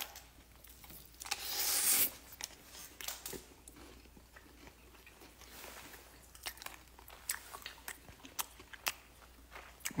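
Close-up biting and chewing of crispy dakgangjeong, Korean glazed fried chicken, with scattered sharp crunches that come thickest in the second half. A louder noisy rush comes about a second and a half in.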